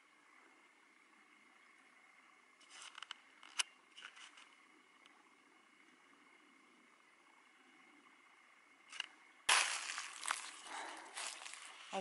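Dry brush and leaf litter crackling and rustling, as from pushing through or stepping in dry undergrowth. A few short crackles come about three to four seconds in, then a loud, dense run of rustling and snapping fills the last two and a half seconds, over a faint steady background hiss.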